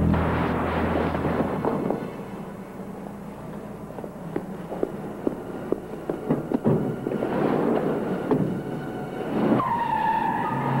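A car's tyres skidding in noisy swells, one at the start and one late on, with scattered knocks and bumps between; just before the end a high squeal sets in and holds.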